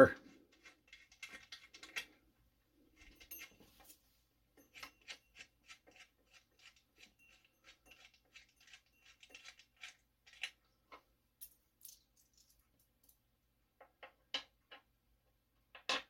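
Faint clicks and light metallic ticks of a chainsaw's bar nuts being loosened and taken off its side cover. The clicks run fairly evenly at about three a second through the middle, with a few sharper clicks near the end.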